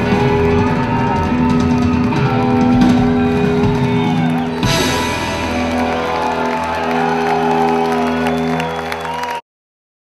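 Rock music played by a band with electric guitar, built on long held notes, with a fresh loud entry about halfway through. It cuts off suddenly shortly before the end.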